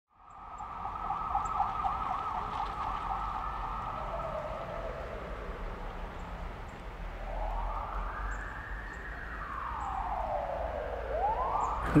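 Ambulance siren: a fast warbling yelp for the first few seconds, then a slow wail that rises and falls over several seconds and begins to rise again near the end, with a low rumble underneath.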